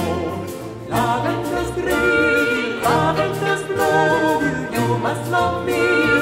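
Early-music ensemble performing an English folk song: several voices singing, over bowed strings and a hand-struck frame drum, with new phrases entering every second or so.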